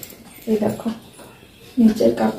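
A woman's voice in a few short wordless vocal sounds, a brief run of syllables about half a second in and another starting near the end.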